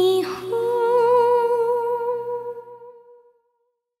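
Soundtrack music: a voice humming a held note, a short breath, then a higher long note with vibrato over a low drone, fading out to silence about three seconds in.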